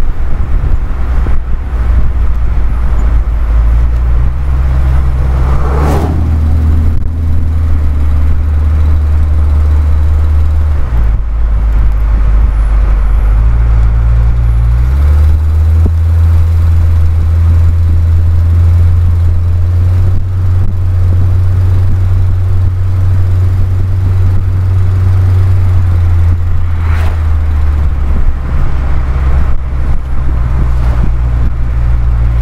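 Car engine and road noise heard from inside the cabin while driving, a loud low drone that steps up or down in pitch a few times along the way.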